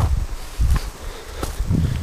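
Footsteps through brush, with leaves and twigs rustling against the walker and two sharp twig snaps.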